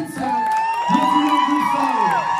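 Crowd cheering, with long, high, held whoops that fall away near the end.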